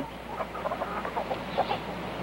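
Chickens clucking, a string of short scattered calls from a few birds scratching about.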